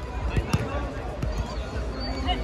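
Futsal ball struck and thumping on a hard outdoor court, with two sharp knocks close together about half a second in. Players' voices call out around it.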